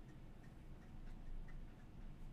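Faint, irregular ticks and light scratches of a fountain pen nib on paper as a word is written by hand, over a low steady hum.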